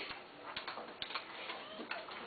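A few light, irregular clicks and taps in a quiet room.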